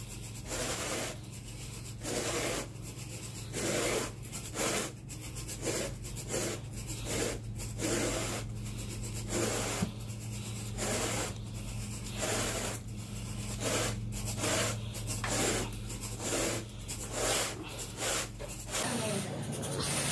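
Carpet rake dragged back and forth through berber carpet pile, a rough brushing scrape on each stroke, roughly one to two strokes a second, over a steady low hum.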